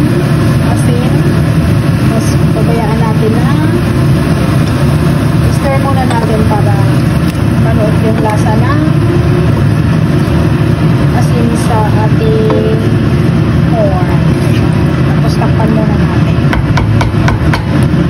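A steady low drone, with indistinct voices faintly over it. Near the end come a few light clicks as a wooden spatula stirs pork and onion in a non-stick pan.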